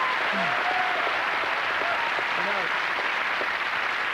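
Studio audience applauding steadily, with a few faint voices over the clapping.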